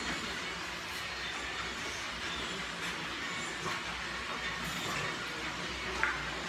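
Steady background hiss of room noise, with a few faint light clicks and taps.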